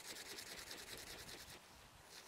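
Faint rustling and rubbing of a fistful of fresh pasture grass being rolled between the palms, crushing it to break the cell walls and free the sap.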